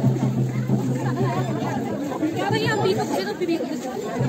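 Many people chattering at once in a dense crowd, with music playing underneath.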